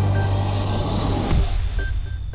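News programme intro music ending on a held low bass note under a loud whoosh sound effect that swells and then fades away, with a few short high beeps.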